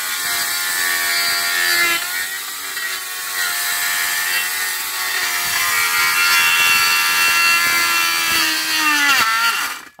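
Electric pole saw running with a steady motor whine, the pitch sagging when the chain bites into branches, then winding down and stopping shortly before the end.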